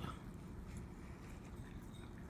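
Faint, light scratching of a felt-tip marker drawing small circles on a cardboard cereal box, over low room noise.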